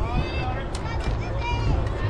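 High-pitched voices of players and spectators shouting and cheering at a softball game, with a few sharp clicks and a low wind rumble on the microphone.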